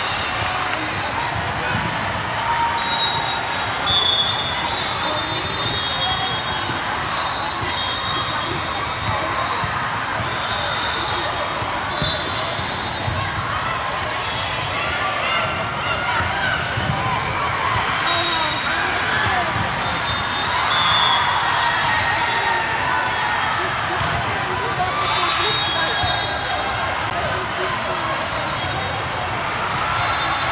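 Volleyball being played in a large, echoing tournament hall: a steady din of many voices from spectators and players, with the sharp smacks of the ball being served, passed and spiked during a rally. Short high-pitched tones come and go over the din.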